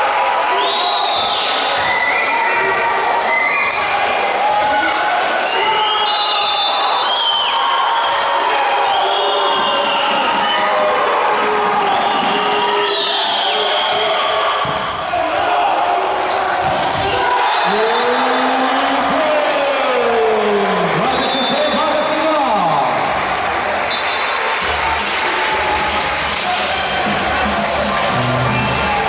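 Sounds of an indoor volleyball rally in a large, echoing hall: the ball being struck and hitting the court, with players' and spectators' voices calling out throughout.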